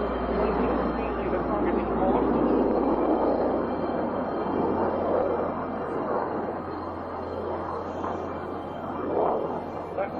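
Steady roar of jet aircraft engines at takeoff power, with a low hum beneath it.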